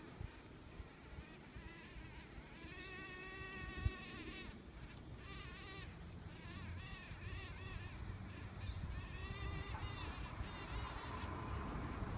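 Eastern carpenter bee buzzing in flight close by, in several bouts, its pitch wavering up and down as it passes. About four seconds in there is a single sharp tap.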